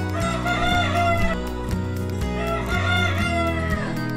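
Roosters crowing twice, once at the start and again past the middle, each crow lasting about a second, over background music with a steady beat.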